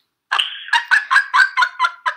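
A woman laughing in a rapid, high-pitched cackle: a quick run of short "ha" pulses, about six a second, starting about a third of a second in.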